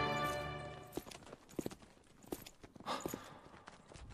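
Background music fades out over the first second, then a few separate hard footsteps on a floor follow at uneven intervals.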